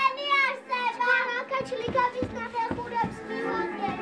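Young children's voices on stage over music, with several dull thumps between about one and a half and four seconds in.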